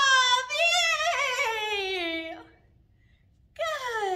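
A woman's high, drawn-out wordless vocal sound, wavering and then sliding down in pitch over about two and a half seconds, imitating a rocket blasting off at the end of a countdown. After a pause of about a second, a shorter vocal sound falls in pitch near the end.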